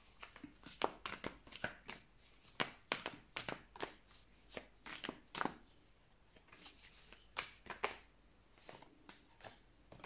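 A deck of tarot cards being shuffled and handled by hand: soft, irregular flicks and slaps of card against card, denser in the first half and sparser toward the end.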